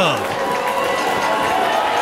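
Wrestling crowd in a hall: a shout that falls steeply in pitch right at the start, then a steady wash of many voices.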